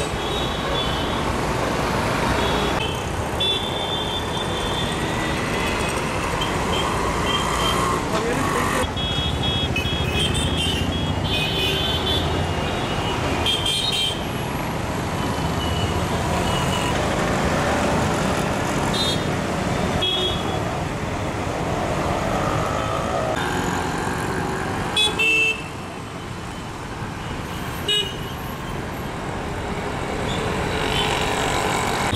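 Busy city street traffic of auto-rickshaws, motorcycles and buses, a steady din of engines with vehicle horns tooting many times throughout, and background voices. Two short sharp knocks stand out near the end.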